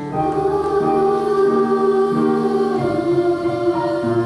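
A children's choir singing a slow melody in long held notes.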